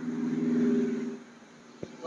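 A motor vehicle passing on the road: a steady engine hum that swells to its loudest in the first second and fades out soon after.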